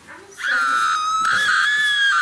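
A high-pitched scream that starts about half a second in and is held steadily, wavering slightly in pitch.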